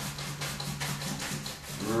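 Clean wide paintbrush scrubbing across stretched canvas in quick back-and-forth strokes, several a second, blending wet paint softly.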